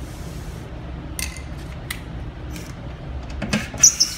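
Scattered light clicks and taps of tools being handled over a steady low background hum, with a cluster of clicks near the end and a sharp click just before it ends as a Ryobi cordless drill is put to the template's screw.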